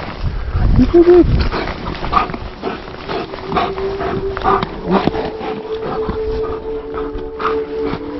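A dog vocalising loudly about a second in, then short scuffling sounds as it tugs at a stick in snow-dusted grass.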